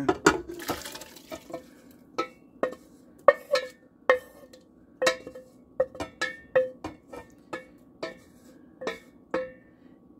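Corn and carrots sliding out of a stainless steel saucepan into a metal cooker pot, then a wooden spoon scraping and knocking against the pan. About twenty irregular sharp taps, each with a brief metallic ring.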